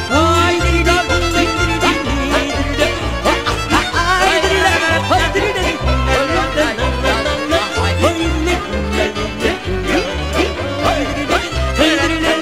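Instrumental break in a Hungarian magyar nóta song: a violin carries the melody over a band accompaniment with a steady, regular bass beat.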